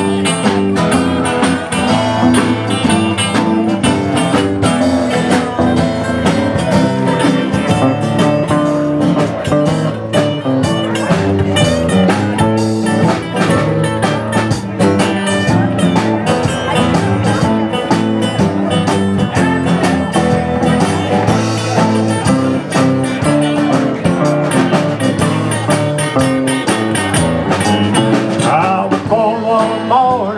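Live country band playing an instrumental break: pedal steel guitar over strummed acoustic guitar and drums, with a steady beat.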